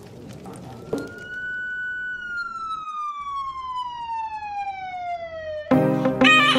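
Synthesized logo-reveal sound effects: a crackling, glittery texture, a sharp hit about a second in, then one sustained tone with overtones that holds and then slides steadily down in pitch for several seconds. Music with a sitar comes in near the end.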